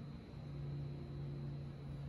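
Quiet background with a low, steady machine hum and no distinct events.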